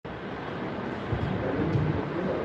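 Steady background noise with a low rumble and no speech.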